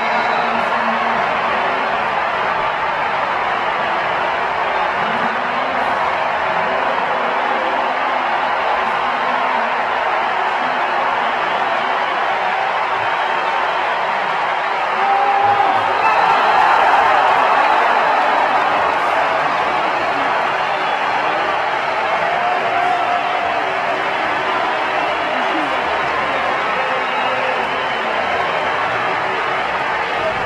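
Large stadium crowd noise, swelling into louder cheering about fifteen seconds in, then settling back to a steady din.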